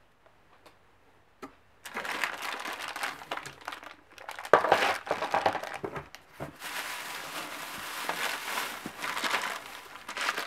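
Packing material rustling and crinkling as hands dig through a cardboard box of shredded-paper filler and plastic-bagged stones. It starts about two seconds in, goes on busily and is loudest about halfway through.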